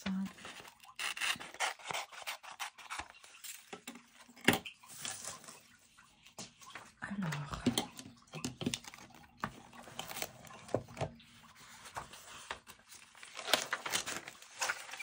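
Magazine paper being handled: the cut-out page and paper scraps rustling and crinkling, with scattered light taps and one sharp click about four and a half seconds in. Near the end, notebook pages are leafed through.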